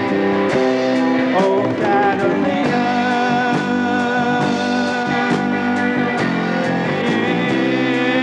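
A band playing a soft-rock song: electric and bass guitars over a drum kit, with regular cymbal strokes. A wavering lead melody line comes in about three seconds in.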